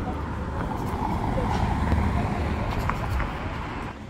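Street traffic noise: a vehicle passing, swelling toward the middle and easing off, over a low steady rumble.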